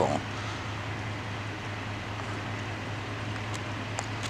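Steady outdoor background noise: an even hiss over a steady low hum, with two faint clicks near the end.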